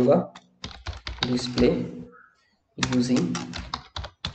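Typing on a computer keyboard: a quick run of keystrokes, with a short pause a little after two seconds in.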